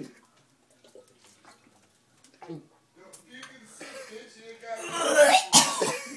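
A man coughing and hacking on a mouthful of dry ground cinnamon. A few small throat sounds lead into a harsh coughing fit that builds from about halfway and is loudest near the end.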